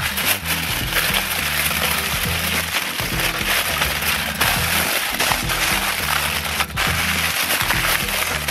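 Aluminium foil crinkling and crackling as hands fold and crimp it closed around fish in a baking tray, over background music with a low, stepping bass line.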